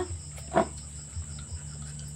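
Steady high-pitched insect drone, like crickets, with a low hum beneath, and a brief voiced sound about half a second in.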